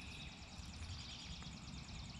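Quiet outdoor background between remarks: a faint steady hiss over a low rumble, with no distinct event.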